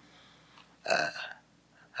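A man's single short hesitant "uh" about a second into a pause in his talk, otherwise quiet.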